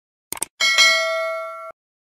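Subscribe-animation sound effect: a quick double click, then a bright bell-like notification ding. The ding rings with several tones at once, fades slowly for about a second and cuts off suddenly.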